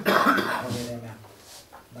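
A person coughing, one loud harsh cough at the very start that trails off within about a second, with some throat clearing.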